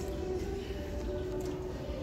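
Shop ambience: a steady low rumble of room noise with faint background music.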